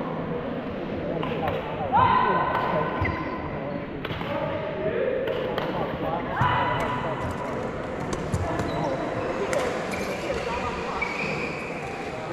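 Wheelchair badminton rally on a wooden gym floor: sharp racquet strikes on the shuttlecock and squeals of wheelchair tyres on the floor, with a couple of long squeals about two and six and a half seconds in. Voices carry in the background of the echoing hall.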